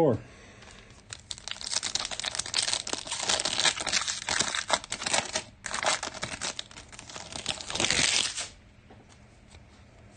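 A trading-card pack's wrapper being torn open and crinkled by hand, a dense crackling that starts about a second in, breaks off briefly in the middle, and stops sharply near the end. The pack is a 2023 Panini Absolute Football pack.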